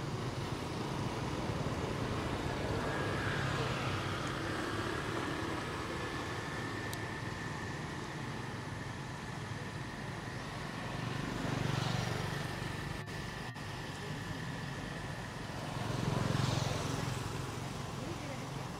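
Background road traffic: a steady low rumble, with two vehicles passing and swelling, then fading, about two-thirds of the way through and again near the end. A faint steady high whine runs through the middle.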